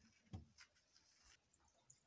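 Near silence: room tone, with one faint brief sound about a third of a second in.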